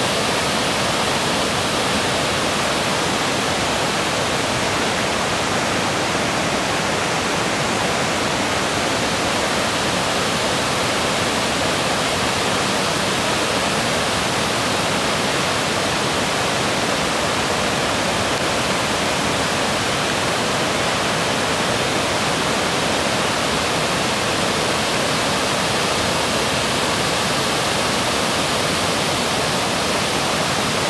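Wiscoy Falls: wide, low cascades of creek water rushing steadily over stepped rock ledges, a loud, even roar of falling water.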